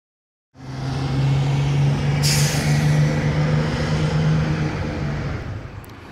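Bus engine running with a steady low hum, starting about half a second in, with a short sharp burst of compressed-air hiss about two seconds in. The engine sound fades away over the last second.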